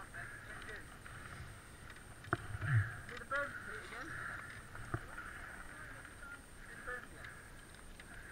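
Faint distant voices, broken by a few sharp clicks and a brief low rumble.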